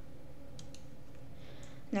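Two or three faint computer mouse clicks about half a second in, over quiet room tone.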